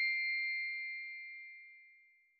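The last struck note of a bell-like chime in a song, ringing on at a steady pitch and fading away to silence.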